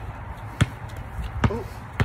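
A small basketball bounced on a concrete driveway: sharp bounces about a second apart, with the next one landing right at the end.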